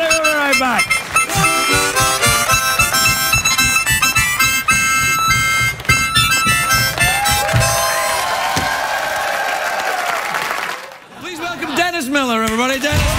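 Harmonica playing a quick run of short, stepped notes.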